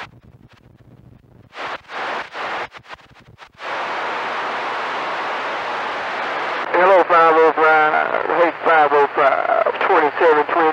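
CB radio receiver on channel 28 between transmissions. A few short bursts of static give way to a steady hiss for about three seconds, then a voice comes in over the radio.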